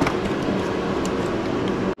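A steady machine drone with a low hum runs throughout, with a few faint clicks near the start. It cuts off abruptly near the end.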